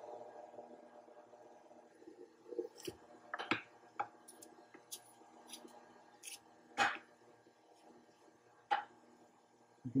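KitchenAid stand mixer running on its lowest speed with the grinder and sausage-stuffing attachment. Its low motor hum fades over the first couple of seconds as the meat filling starts to come through the stuffing tube. About ten sharp, irregular clicks follow.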